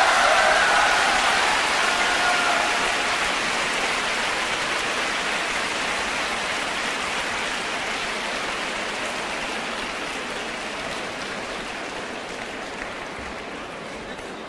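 Crowd applauding, with a few shouts mixed in at the start, the applause dying away slowly.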